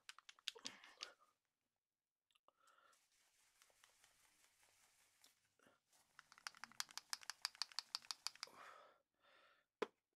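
Metal ball bearing rattling inside a small metal tin of model paint as the tin is shaken to mix the paint: rapid clicks briefly at the start, then a quicker run of clicks for about two seconds in the second half.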